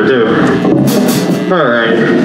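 Hardcore punk band playing live: distorted electric guitars and drum kit under a shouted voice, with a bright crash about a second in.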